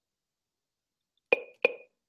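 Two sharp taps, about a third of a second apart near the end, each with a brief ringing tail.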